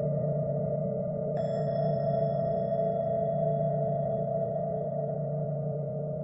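Tibetan singing bowls ringing in a steady, sustained drone. About a second and a half in, a bowl is struck again, adding bright high overtones that fade away over the next few seconds.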